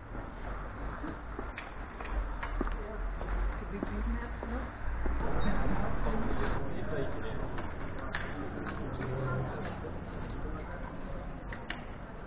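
Town street ambience: indistinct voices of passers-by over a steady low rumble, with a few light clicks; it swells louder for a couple of seconds around the middle.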